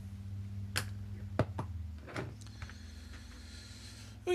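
A few short, sharp plastic clicks and taps in the first half, the loudest about a second and a half in: a Citadel paint pot's flip-top lid being snapped shut and the pot set down among the others. Under them runs a steady low hum.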